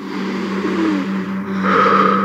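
A whoosh like rushing wind, swelling and growing louder towards the end, over a steady low hum: a film sound effect.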